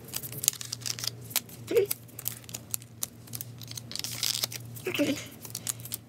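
Clear plastic packaging crinkling and rustling, with scattered sharp clicks, as a nail stamping plate is worked out of its plastic sleeve and card backing.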